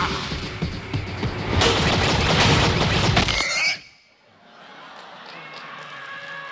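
Animated action-cartoon soundtrack: music mixed with crashes and blows that cuts off suddenly about four seconds in, leaving only low background noise.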